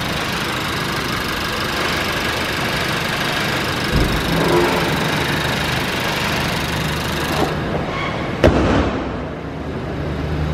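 Honda Vezel's four-cylinder petrol engine idling steadily, heard close with the bonnet open. Near the end comes one sharp slam, the bonnet being shut.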